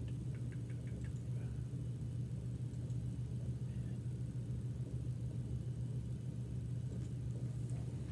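Steady low hum from room equipment such as a projector or ventilation fan. A quick run of about six light computer-mouse clicks comes in the first second.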